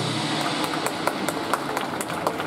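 Drum corps percussion ticking out a steady pulse of sharp clicks, about five a second, as a held chord fades away at the start.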